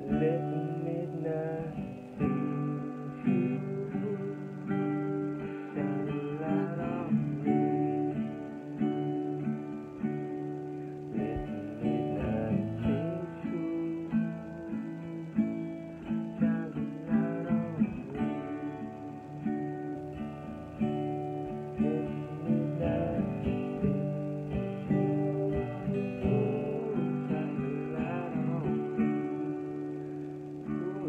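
Acoustic guitar strummed and picked in a steady rhythm, with a man's voice singing along at times.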